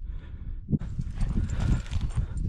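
Footsteps crunching through dry sagebrush and gravelly ground as a person walks, with an uneven low rumble and brush rustling.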